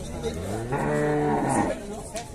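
Zebu cattle mooing: one long moo that rises in pitch as it starts, holds steady, then falls away near the end.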